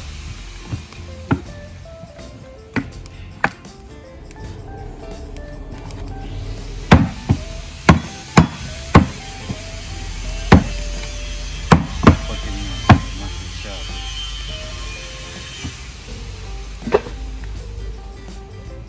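Machete chopping through a rack of raw ribs on a wooden chopping block: about a dozen sharp chops in uneven clusters, the heaviest run coming in the middle of the stretch. Background music plays under the chops.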